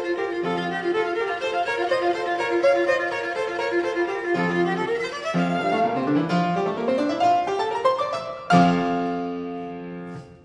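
Viola and piano playing a fast classical-era sonata movement. Quick running notes give way to rising scale runs about five seconds in, which land on a loud held chord near the end that fades away.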